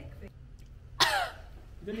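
A woman's single sudden cough or splutter about a second in, with a falling pitch, as she reacts to a strong health shot she has just swallowed that makes her eyes water.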